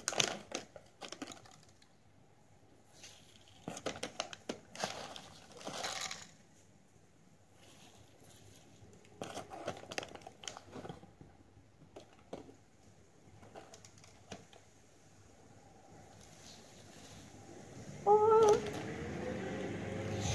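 Plastic rice packet and a disposable glove crinkling and rustling in short bursts, with quiet gaps between. A brief voice sound near the end.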